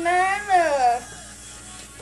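One long, wavering wail that rises and then falls, lasting about a second, over background music.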